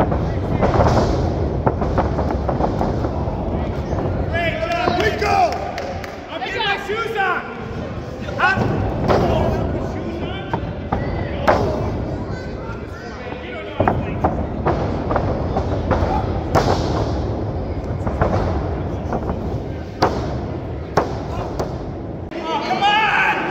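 Wrestlers hitting the canvas of a wrestling ring, several sharp thuds and slams spread through the stretch, over shouting and chatter from a small crowd. Near the end, the referee's hand slaps the mat during a pin count.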